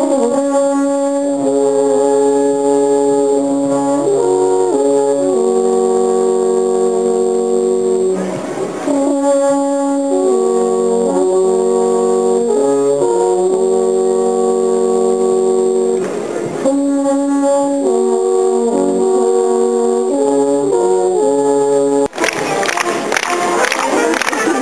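Three alphorns play together in long held notes in harmony, with short stepping passages between. Their phrases run about eight seconds each, broken by brief pauses for breath. Near the end the horns cut off abruptly and a noisier mix of crowd and music takes over.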